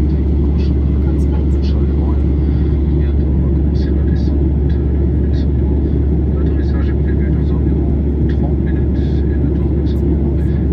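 Boeing 737-800 cabin noise in flight: the steady, deep roar of its CFM56-7B engines and airflow, heard from inside the cabin. Faint voices sound through it.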